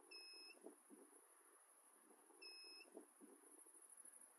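Two short electronic beeps, each a clean high tone lasting under half a second, the second about two seconds after the first, over near silence with a faint steady high whine.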